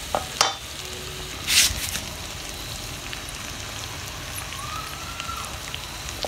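Pork curry sizzling steadily as it fries in its sauce in a metal pot, with a wooden spoon stirring and scraping through it; the loudest scrape comes about a second and a half in.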